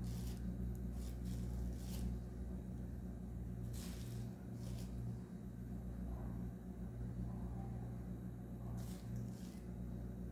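A metal spoon scooping fine cassava starch out of a plastic bag into a bowl. Faint scrapes and plastic rustles come every few seconds, over a steady low hum.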